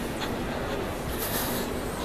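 Steady room noise of a large airport baggage claim hall: a constant low hum under a wash of indistinct background noise, with a few brief light clicks.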